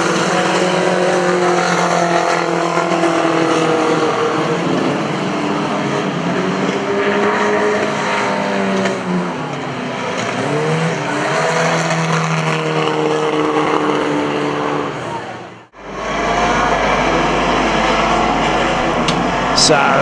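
Engines of old pre-1975 classic banger racing cars running and revving, their pitch rising and falling, with tyre squeal from wheelspin. About three-quarters of the way through the sound drops out for a moment and comes back as a deeper, steadier engine rumble.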